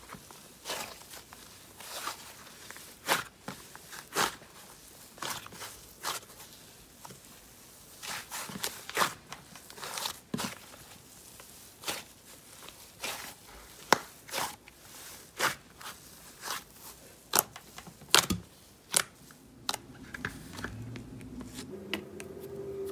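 Soft white fluffy slime squeezed, folded and stretched by hand, giving irregular sharp crackling pops about one or two a second.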